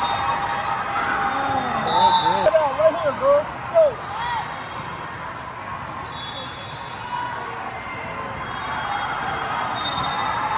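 Athletic shoes squeaking on a hardwood volleyball court, a quick run of short squeaks about two to four seconds in, over the steady crowd chatter of a large hall.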